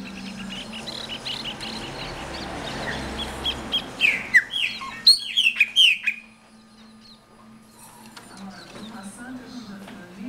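Chopi blackbird (pássaro preto) singing: a run of short high notes, then a burst of loud, sharply falling whistles between about four and six seconds in, under a faint steady low hum.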